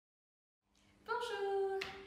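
Silence, then a woman's voice begins speaking about a second in, clear and fairly high-pitched, with one sharp click near the end.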